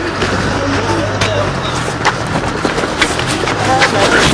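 Scuffling picked up by a jostled handheld camera: rustling, knocks and footsteps, with scattered voices in the background. A steady low hum runs underneath.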